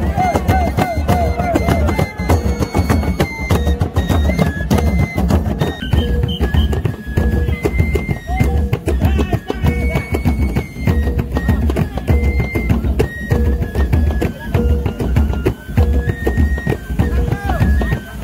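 Traditional Maluku drum music: laced double-headed tifa hand drums played in a fast, steady rhythm, with a recurring pitched tone and a stepping melody line over the beat.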